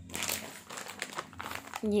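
Clear plastic garment packaging crinkling as a packaged suit is handled and set down, with a short burst of crackling that stops just before a voice begins at the end.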